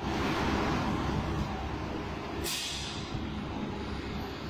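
Steady background noise of a large gym hall, a low even rumble, with a short hiss a little past halfway.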